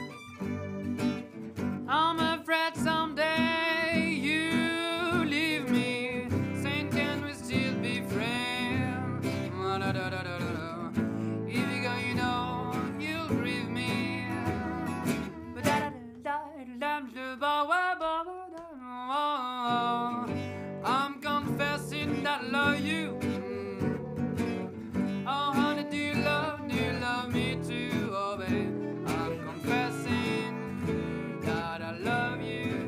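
Gypsy-jazz (jazz manouche) quartet playing: a lead melody with vibrato over acoustic rhythm guitar, a second acoustic guitar, violin and plucked double bass. Just past the middle the accompaniment and bass drop out for a few seconds, leaving the lead line nearly alone, before the full band returns.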